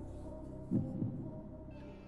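Tense game-show thinking music: sustained droning tones with a low, heartbeat-like pulse that thumps once a little before the middle.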